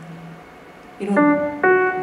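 Electronic keyboard with a piano sound playing a melody. After a quiet first second, two sustained notes or chords come in about half a second apart.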